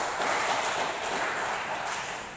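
Audience applause in a large hall, a dense steady clapping that starts to fade near the end.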